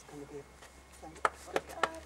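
A quick run of short, sharp clicks or taps, about four a second, starting a little past a second in.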